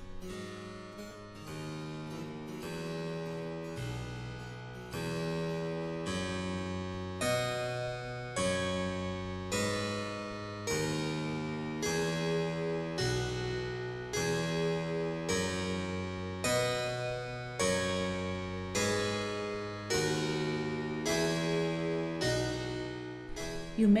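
Harpsichord playing a repeating chord progression over a moving bass, a plucked chord struck about once a second.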